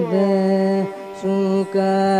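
Live Carnatic music: a single melody line of long held notes that slide and waver between pitches, with a pause about a second in and a brief break near the end.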